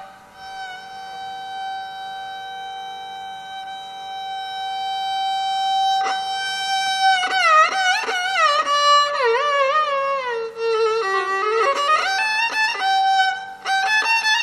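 Violin played in Carnatic style: one long held note, then from about six seconds in, quick ornamented phrases with wavering slides (gamakas) that sink lower and climb back up to the held note near the end.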